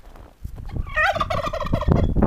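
White domestic turkey tom gobbling once, a rapid wavering call lasting under a second, starting about a second in.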